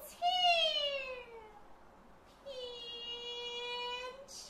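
Kun opera female voice in stylized delivery: a high, drawn-out syllable sliding down in pitch, then after a short pause a long, steady held note near the end.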